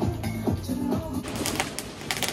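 Pop dance music with a steady beat playing from a television, cutting off just over a second in. It gives way to a quick run of sharp pops and crackles from New Year fireworks.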